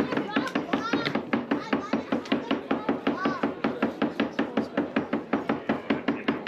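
A rapid, even knocking, about six knocks a second, with voices faintly behind it.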